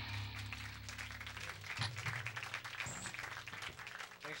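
Guitar amplifier hum dying away after the band's last chord, with scattered clapping and a couple of dull knocks from the stage.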